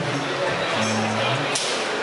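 Live band playing the opening bars of a song, amplified in a large hall: held bass notes under guitar and drums, with voices mixed in.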